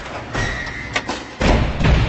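Cinematic sound effects for an animated logo reveal: several deep thuds and hits in quick succession, the loudest two in the second half.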